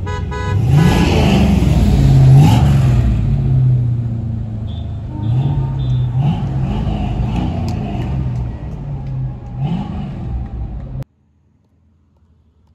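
Car horn tooting at the start, then a car engine heard from inside the cabin, revving up several times with its pitch rising each time. The sound cuts off suddenly about eleven seconds in.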